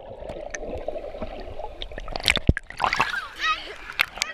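Muffled, gurgling water sound with the high end cut off as the camera is held underwater, then splashing about two seconds in as it breaks the surface, followed by a high voice near the end.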